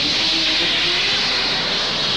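Steady jet roar of the Saunders-Roe SR.A/1 flying boat's two turbojets at takeoff power as it skims across the water, a loud, even rushing hiss.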